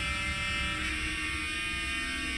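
A sustained electronic drone chord from a TV serial's background score: one held, buzzy tone with many overtones over a low rumble, unchanging in pitch.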